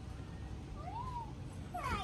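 A domestic animal crying: a short call that rises and falls in pitch about a second in, then a louder call sliding down in pitch near the end.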